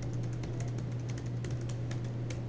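Room tone: a steady low hum with a scattering of faint, quick, irregular clicks.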